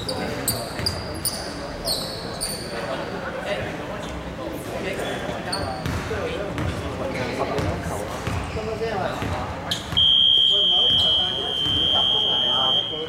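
A gym scoreboard buzzer sounds a loud, steady high tone starting about ten seconds in, over the chatter of people in a large hall. A few short high squeaks come in the first few seconds.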